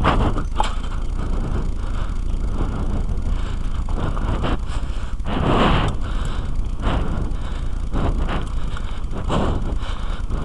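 Kona mountain bike ridden over a dirt trail, heard through a helmet camera: a steady low wind rumble on the microphone with scattered rattles and knocks from the bike over the ground, and a louder rush about five and a half seconds in.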